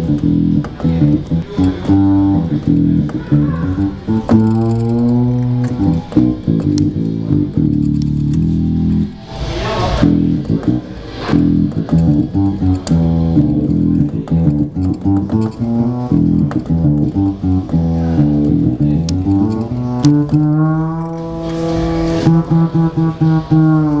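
Yamaha CLP 535 digital piano playing a melodic line in a plucked-string voice, driven over MIDI by an Atemp MC1 controller. Near the end the held notes slide up and then back down in pitch as a lever on the MC1 is worked.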